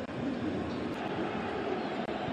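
Steady background noise of a stadium crowd at a football match, an even wash of sound with no single event standing out.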